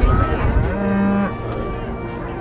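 A cow moos once, a short held call about halfway through. It follows a heavy low bump at the very start.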